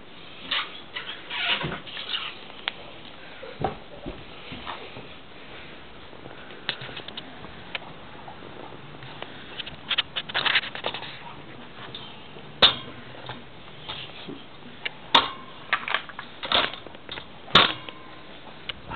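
Scattered rustles and knocks from someone moving about while holding the camera, with three sharp clicks in the second half.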